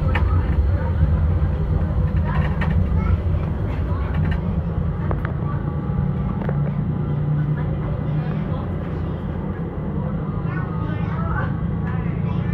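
Tram running, heard from inside the car as a steady low rumble, with passengers talking indistinctly over it; the voices grow clearer near the end.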